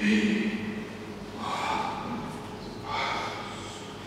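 Human vocal sounds: a short voiced sound, then two loud breaths about a second and a half apart.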